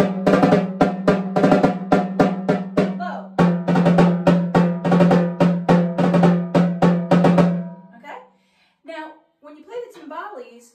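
Pair of metal-shelled timbales struck with wooden drumsticks, about three ringing hits a second. The higher, smaller drum is played first, then from about three seconds in the bigger, lower-pitched drum. The playing stops about two seconds before the end.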